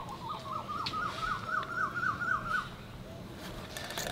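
A bird calling a quick, even series of short rising notes, about five a second, creeping slightly higher in pitch and stopping a little under three seconds in.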